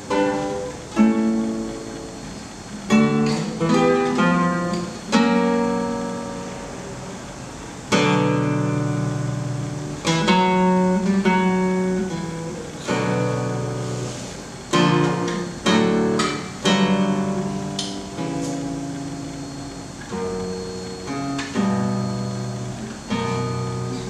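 Classical guitar played solo: plucked chords and runs of single notes, each strong chord struck sharply and left to ring out and fade before the next.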